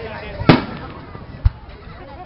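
Aerial fireworks shells exploding: a sharp, loud bang about half a second in, then a shorter, deeper boom about a second later.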